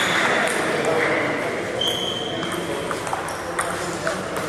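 Table tennis ball clicking off paddles and table in an irregular run of sharp ticks during a rally, with clicks from games at other tables. A brief high squeak sounds about two seconds in, over a background murmur of voices.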